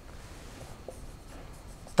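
Marker pen writing on a whiteboard: faint strokes of the felt tip across the board.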